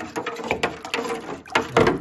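A hand swishing and stirring water in a plastic hydroponic reservoir tub, with irregular splashes and sloshes, mixing fertilizer into the fresh water. A louder splash comes near the end.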